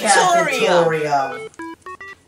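A voice talking, then from about a second and a half in a quick run of short electronic beeps on changing notes, in a retro video-game style.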